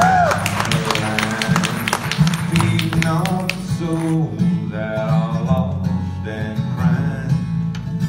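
Bluegrass band playing an instrumental passage: harmonica over two strummed acoustic guitars and an upright bass. The harmonica bends a note right at the start.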